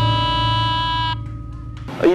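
Javanese gamelan music for a kuda lumping (jaranan) dance: one long held melodic note over a low ringing hum. The note fades away a little past halfway and the music cuts off just before the end.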